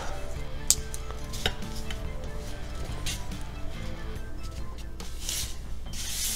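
Scattered light clicks and taps of a hard plastic action figure being handled on a tabletop, with a brief rustle as hands take hold of it near the end. Faint background music runs underneath.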